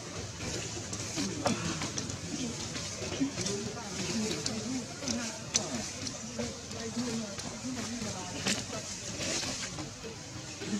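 Indistinct human voices murmuring in the background, with a few sharp clicks and rustles scattered through.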